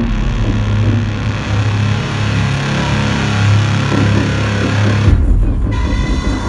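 Loud live electronic breaks/industrial music: a dense, noisy distorted synth wash over a heavy bass drone. About five seconds in, the high end cuts out and a deeper bass comes in.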